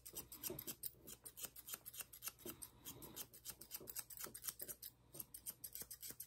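Ashley Craig Art Deco thinning shears snipping through a dog's neck coat: a rapid, faint series of snips with a brief pause about five seconds in.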